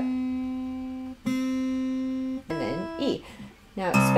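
Breedlove Koa Pursuit Exotic acoustic guitar's second string plucked twice, each single note ringing steadily for about a second. The string is being tuned up a half step from B to C for open C tuning.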